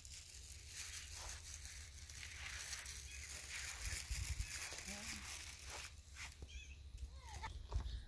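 Quiet outdoor garden ambience: a steady low rumble of wind on the microphone under an even hiss, with a few faint short sounds in the second half.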